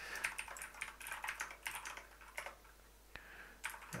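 Typing on a computer keyboard: a quick run of keystrokes, a pause of about a second past the middle with one lone click, then a few more keys near the end.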